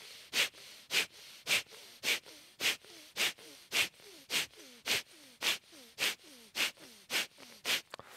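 Kapalbhati breathing: a steady train of short, forceful exhalations through the nose, about two a second, with faint, quick inhalations between them.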